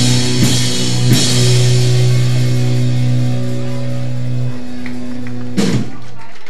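Live rock band of electric guitars, bass guitar and drum kit: a few drum hits, then the band holds a ringing chord for several seconds as the song ends. The bass drops out near the end and one last drum and cymbal hit closes it.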